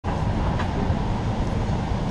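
Steady low outdoor rumble picked up by a handheld wide-angle camera's microphone, with a faint click about half a second in.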